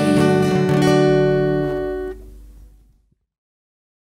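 Song ending on an acoustic guitar's final strummed chord, which rings on, drops off sharply about two seconds in and fades away within another second.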